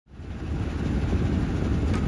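Low, steady rumble of a river boat's engine, fading in over the first half second.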